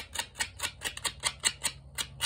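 Sandpaper scraping over a small engine's valve seat in quick, even back-and-forth strokes, about six or seven a second: the seat is being resurfaced by hand in place of lapping compound.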